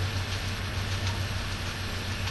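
Steady background noise, an even hiss with a constant low hum underneath.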